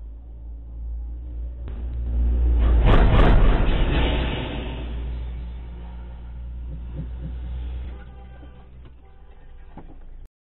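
Low vehicle rumble picked up by a dashcam microphone inside a stopped car, swelling to its loudest about three seconds in with a few sharp clicks, then easing off and dropping again near the end.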